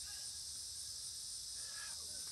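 Steady high-pitched insect chorus, an even unbroken buzz with no other distinct sound.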